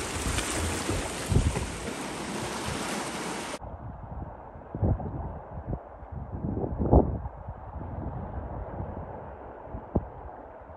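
Sea waves washing and breaking over shoreline rocks, with wind on the microphone. About three and a half seconds in, the sound cuts abruptly to a duller, muffled wind rumble with a few gusts buffeting the microphone.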